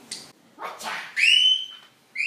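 A young girl's high-pitched scream that rises quickly and is held for about half a second, a little past the middle.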